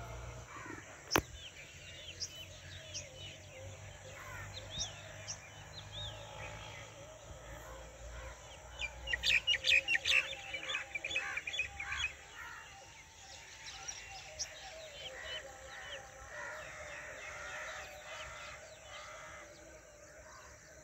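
Birds chirping and calling in the trees: many short high chirps, with a dense run of loud repeated calls about nine to twelve seconds in. A single sharp click comes about a second in.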